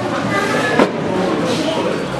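Several voices talking over one another, with one sharp knock about a second in.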